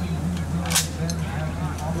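Indistinct voices talking over the steady low rumble of an idling half-track engine, with one sharp crack a little under a second in.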